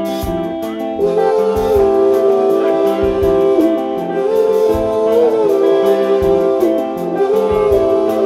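Live band playing an instrumental passage: a held, singing lead melody that bends in pitch over sustained chords, with a steady bass-drum pulse and cymbals.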